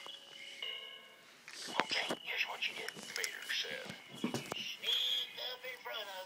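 Quiet, unclear voices with a steady high tone behind them.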